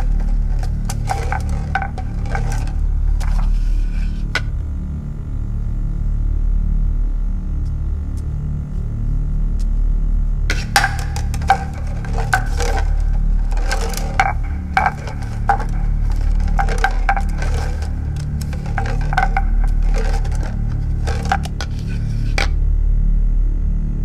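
Horror film sound design: a steady low ominous drone, with bursts of dense crackling, creaking clicks in the first few seconds and again from about halfway through to the end. Between the bursts a thin sustained tone hangs over the drone.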